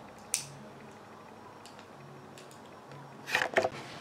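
A single sharp click about a third of a second in, from the girl's multi-colour pen as she works its colour selector. Near the end comes a louder spell of rustling and knocks as the pen is put down on the wooden table and the magazine papers are handled.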